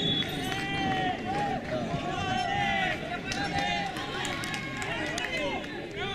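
Several voices shouting across an open football pitch during play: short, high, rising-and-falling calls, one after another, over a steady outdoor background.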